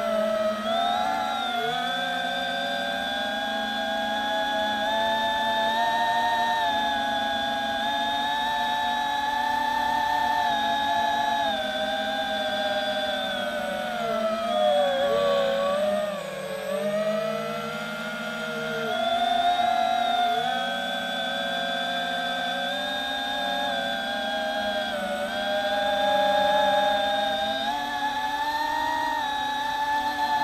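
Quadcopter's brushless motors and propellers whining, several tones gliding up and down together as the throttle changes. The pitch sags and the sound drops for a couple of seconds near the middle, then climbs back.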